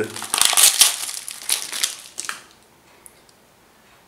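Paper sterile pouch crinkling and crackling as it is pulled open and crumpled by hand to free a disposable tattoo tube tip. The crackling lasts about two seconds and then dies away.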